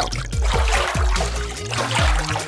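Milk pouring in a steady stream from a glass jug into a glass bowl, over background music.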